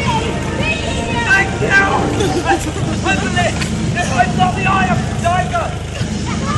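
Voices talking, with the chatter of onlookers, over a steady low rumble.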